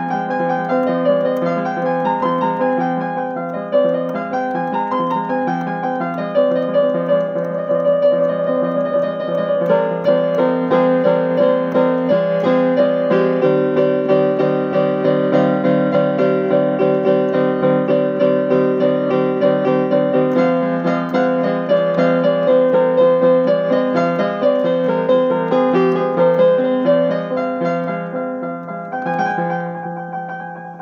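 Piano played continuously with both hands: an improvised piece over a repeated base part, with chords and running notes above it, growing softer near the end.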